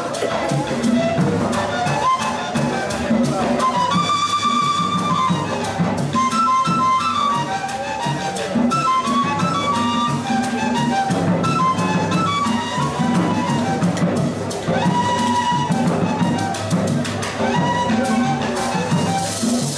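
Colombian gaita ensemble playing live: the long cane duct flutes (gaitas) carry a wavering, stepping melody over a fast, steady beat of hand drums and a shaken maraca.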